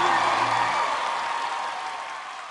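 The song's last held note and bass die away within the first second, leaving a studio audience applauding and cheering; the applause slowly fades.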